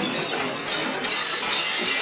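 Crash and clatter of café tables, chairs, crockery and glass being knocked over, a dense continuous din with no music behind it, from a 1970s film soundtrack.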